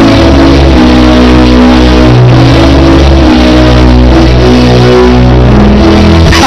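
Loud live church band music: sustained chords held over a low bass line, changing every second or two.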